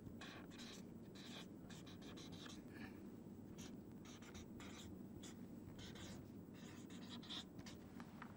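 Marker pen writing on a paper chart: faint, irregular scratchy strokes of the nib across the paper.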